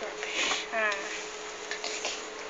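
Egg frying in hot oil in a nonstick frying pan, a low steady sizzle, with a short voiced sound from the cook just before a second in.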